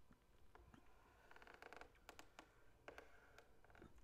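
Near silence with faint clicks from a stylus on a digital drawing tablet: a short scratchy run of ticks a little over a second in, then a few separate clicks.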